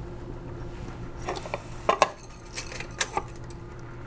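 Laboratory overhead stirrer starting a batch, running with a steady low hum. A handful of sharp glass-and-metal clinks fall between about one and three seconds in as the stirrer and beaker are handled.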